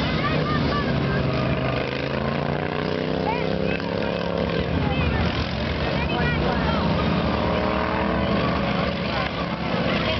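Several racing lawn tractors' modified engines running on the course, their pitch rising and falling as they speed up on the straights and slow for the corners. Spectators' voices are faintly in the background.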